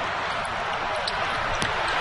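Steady din of a packed basketball arena crowd during a tense inbounds play, with a couple of faint sharp clicks late on.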